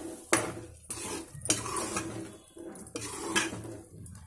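Metal ladle stirring thick cooked millets in an aluminium pressure cooker, scraping and knocking against the pot with sharp clinks about every half second.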